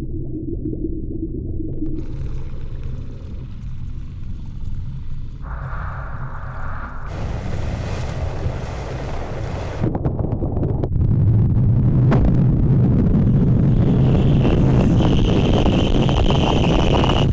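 Low, dense rumbling drone from the film's soundtrack, with shifting layers of noise over it. It swells louder about ten seconds in, and a high steady tone joins near the end.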